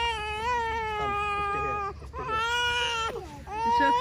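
A young child crying in long, drawn-out wails, with a short break for breath about halfway through and another just before the end.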